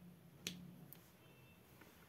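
Near silence broken by one sharp click about half a second in, and a fainter click just under a second in.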